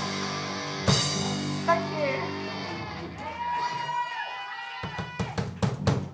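A live rock band ending a song: the final chord on electric guitars and bass rings out and fades, with a couple of drum hits. Voices whoop over it, and a flurry of sharp hits comes near the end.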